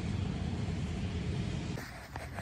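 Steady low rumbling background noise that cuts off abruptly near the end.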